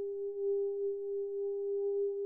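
Mutable Instruments modular synthesizer holding a single mid-pitched note: a smooth, almost pure tone with a faint overtone an octave above, swelling gently in loudness.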